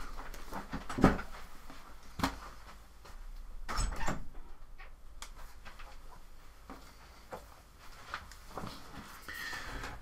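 Scattered knocks and bumps of someone getting up from a desk and opening a room door, with the loudest knocks about a second in and about four seconds in, and smaller ones after.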